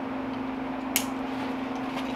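Steady low hum in the room, with one short sharp click about a second in as a pack's nylon strap and its buckle hardware are handled while the strap is threaded through.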